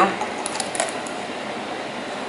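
Fingers pushing cinnamon sticks and dried herbs down into the neck of a plastic shampoo bottle, giving a few faint small clicks and scrapes about half a second in, over a steady background hiss.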